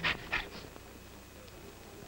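A man huffing out two short, sharp breaths, like a boxer puffing, then quiet with a faint low background hum.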